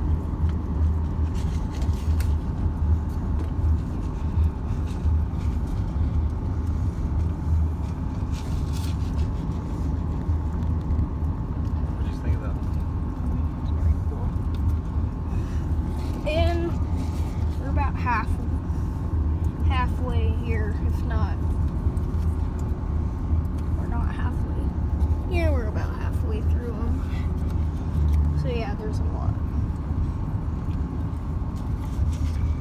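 Pickup truck driving slowly, a steady low engine and tyre rumble heard from inside the cab. Several short pitched calls that rise and fall come over it in the second half.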